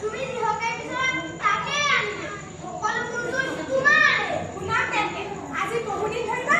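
A young girl's voice speaking stage dialogue, high-pitched and with a strongly rising and falling, dramatic intonation.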